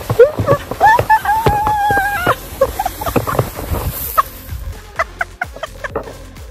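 Music, with short, high gliding pitched sounds and a held two-note tone in the first two seconds, then scattered sharp clicks.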